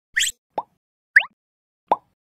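Four short, quick-rising pop sound effects about half a second apart, from an animated intro.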